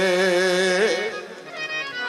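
A qawwal's voice holding a long sung note with a slow vibrato over harmonium. About a second in the voice stops and the harmonium carries on alone with a few steady notes that fade.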